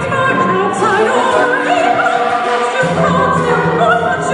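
Live contemporary classical music: a singing voice with vibrato over an instrumental ensemble. A low bass part comes in about three seconds in.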